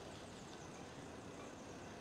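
Near silence: faint, steady outdoor background noise with no distinct event.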